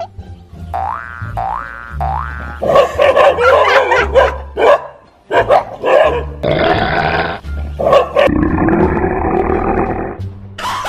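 Three quick rising 'boing' cartoon sound effects over background music, followed by a dog barking repeatedly.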